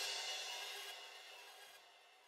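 Drum-kit cymbals ringing out and fading away after the last hit, dying to near silence about a second in.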